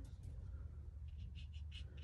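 Faint quick scratchy strokes of a round paintbrush dabbing acrylic paint onto canvas paper, about four a second from about a second in, over a low steady hum.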